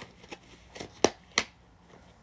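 Close-up mouth sounds of chewing: a few short, wet smacks and clicks, the loudest about a second in.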